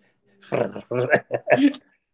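A man laughing hard, a high, strained laugh in several breaths with no words.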